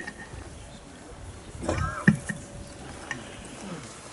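Hushed outdoor crowd during a silent prayer: faint background ambience with a click at the start and a brief, faint voice-like call about two seconds in.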